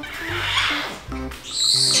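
A parrot gives a short, high screech near the end, the loudest sound here, over background music with a steady bass line.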